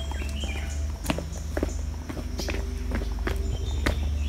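Footsteps of people walking down stone steps and along a garden path, a few sharp steps standing out, over a steady low rumble on the microphone.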